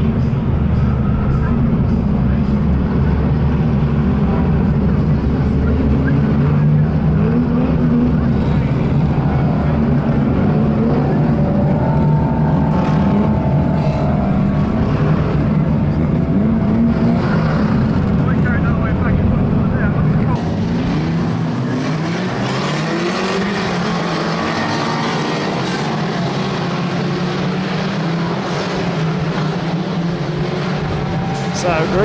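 A pack of 2-litre banger racing cars running and revving together, many engine notes rising and falling over a deep rumble. About two-thirds of the way through the deep rumble drops out abruptly and the engines sound thinner and brighter.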